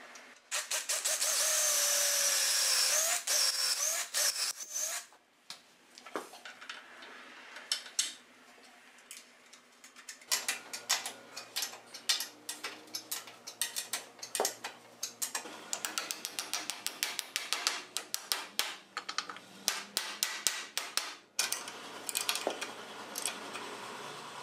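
A cordless drill runs for a few seconds, its pitch bending upward as the bit loads up in the hickory. Then come many quick, sharp clicks and taps of hand tools on the pole's iron fittings.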